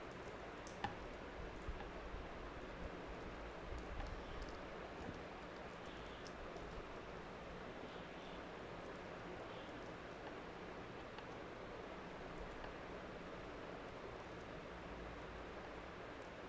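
Faint rustling and a few small clicks from fingers picking open the packaging of a small eraser, over a steady background hiss.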